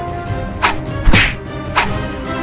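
Fight-scene punch and whoosh sound effects over background music: three quick swishing hits, the loudest just after a second in with a low thud beneath it.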